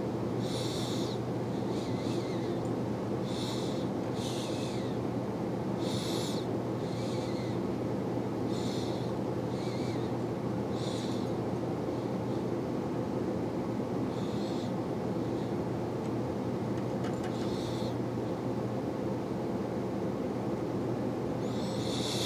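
Steady low room hum, with faint short scratchy sounds every second or two from a peacock quill and thread being wound by hand around a fly-tying hook.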